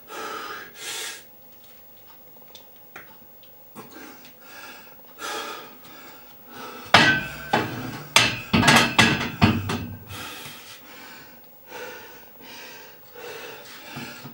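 Barbell and iron weight plates clanking on a squat rack during a set of back squats: a rapid cluster of loud metal knocks from about seven to nine and a half seconds in. Heavy exhalations from the lifter come between the efforts.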